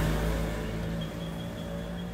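A motor vehicle's engine humming steadily in the background, its low rumble easing off slightly over the two seconds.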